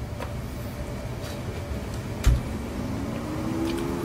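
A front door shuts with one sharp thump a little over two seconds in, over a steady low outdoor rumble. Right after it a low hum rises in pitch and then holds steady.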